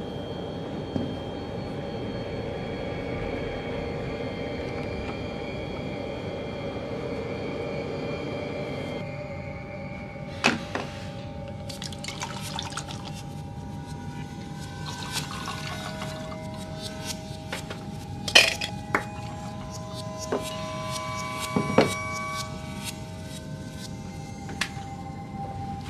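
Liquid poured from a glass bottle into a glass tumbler, with sharp clinks of glass, the loudest about ten, eighteen and twenty-two seconds in. Before this a steady drone with held tones from the film score runs for about the first nine seconds, and a few held score tones continue under the pouring.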